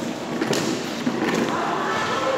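Badminton rackets striking the shuttlecock during a rally: two sharp hits about a second apart, with spectators' voices echoing in a large hall.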